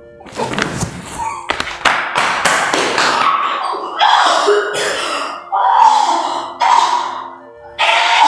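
A run of thumps and knocks for about the first three seconds, then four loud noisy bursts at roughly one-second intervals, over background music.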